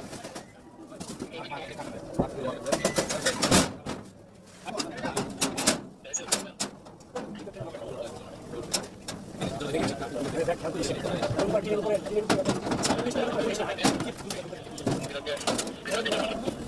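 A hand knocking on and rattling a steel grille door: sharp, irregular metallic knocks and clicks, with low voices murmuring, busier in the second half.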